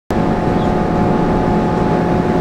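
A boat's engine running steadily: a constant mechanical hum with a few steady tones held throughout.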